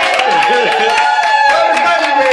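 A small group of people clapping their hands, with voices cheering in long drawn-out calls over the claps.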